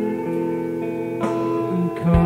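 Slowcore band playing live: slow, sustained guitar chords ring out, with a new chord struck just over a second in and a slight bend in pitch near the end.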